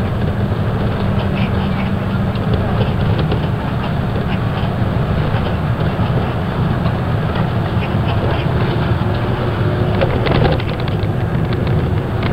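Bus cabin noise while driving: a steady low engine and road rumble, with scattered rattles and clicks and a cluster of them about ten seconds in.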